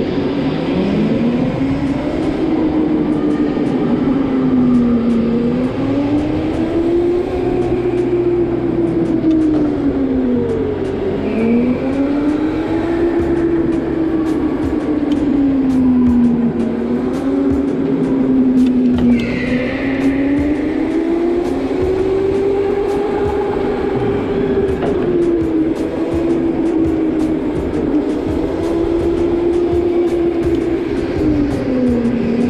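Electric go-kart motor whining, its pitch rising with speed and dropping again and again as the kart slows for corners and accelerates out. A higher whine falls briefly about two-thirds of the way in.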